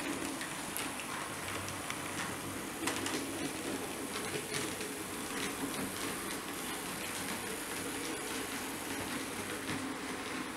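H0-scale Roco BR 212 model diesel locomotive running slowly along the layout track: a steady small-motor whir, with a few light clicks from the wheels over rail joints and points.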